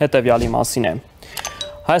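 A short electronic chime of a few clear tones at different pitches, with a faint click, from an on-screen subscribe-button animation. It sounds in a pause about a second in.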